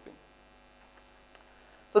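Steady electrical mains hum on the recording, with a faint click a little after a second in.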